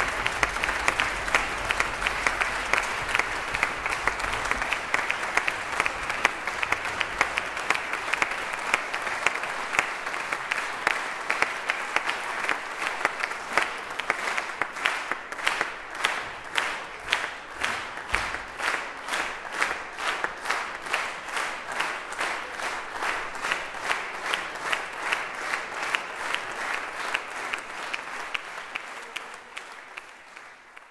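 Concert-hall audience applauding. About halfway through, the clapping falls into rhythmic unison at roughly two claps a second, and it fades out near the end.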